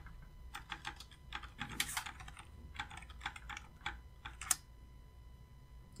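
Computer keyboard being typed on: a quick, uneven run of key clicks typing out a short terminal command, stopping with a sharper keystroke about four and a half seconds in.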